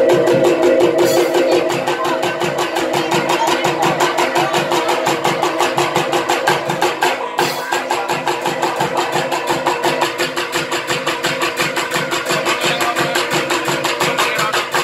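Music for a Soreng folk dance: a fast, even beat of struck percussion over held ringing tones, with a brief break about halfway through.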